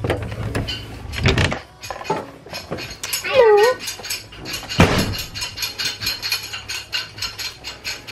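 A run of rapid clicks and knocks, with a short high-pitched voice about three and a half seconds in.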